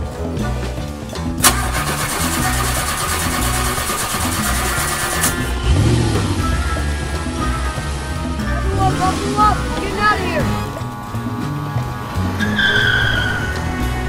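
Background music with a beat, over a vehicle engine starting with a click and a burst of cranking noise, then revving up in rising sweeps, and a short tyre squeal near the end.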